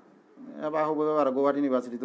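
A man speaking, his voice starting about half a second in after a short pause.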